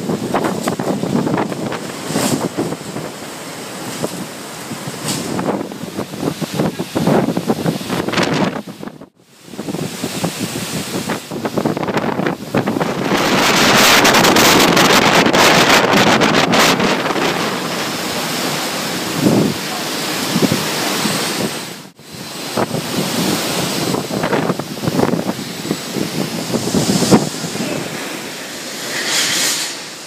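Typhoon-force wind gusting hard and buffeting the microphone, with wind-driven rain. The strongest blast holds for several seconds around the middle. The sound drops out briefly twice, at cuts between clips.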